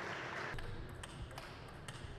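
A table tennis ball making a few light, irregular taps, about four in the last second and a half. A soft rush of noise fades away in the first half second.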